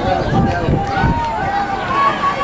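Spectators shouting and calling out, several voices overlapping, over a steady low rumble.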